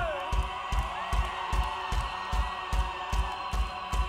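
Live rock band starting a song: a steady kick-drum pulse about two and a half beats a second under sustained guitar and keyboard tones, with a festival crowd cheering.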